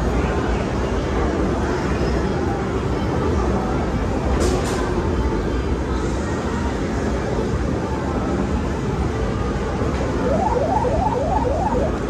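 Arcade game-room din: a steady wash of machine noise and distant crowd with a low rumble. Near the end, a quick run of short rising electronic beeps from an arcade game.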